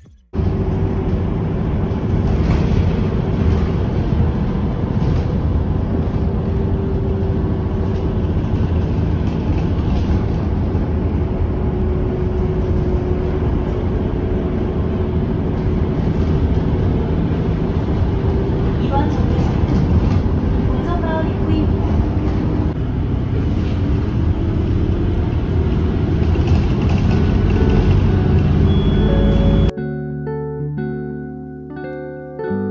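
Inside a moving bus: a steady, loud low rumble of engine and road noise while riding, with a faint steady hum over it.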